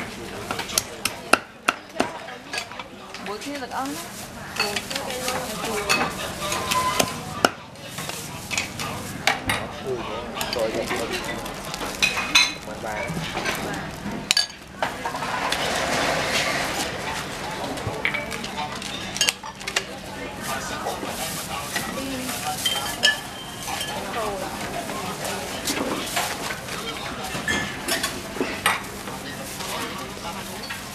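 Busy food-stall clatter: metal utensils and dishes knocking and clinking in many sharp, irregular clicks as grilled meat is handled and packed, with a stretch of plastic-bag rustling about halfway through.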